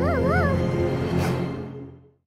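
Tense, dark orchestral score, over which a small cartoon slug gives a short warbling whimper in the first half second; the music fades out near the end.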